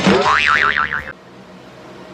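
A cartoon-style boing sound effect: a quick rising twang that settles into a fast wobbling tone, lasting about a second.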